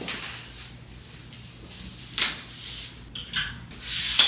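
Rubbing and handling noises as objects are moved about, with a few short, sharp clatters from about two seconds in.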